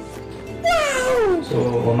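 Background music with a single drawn-out cry that falls in pitch, about a second long, then a spoken word near the end.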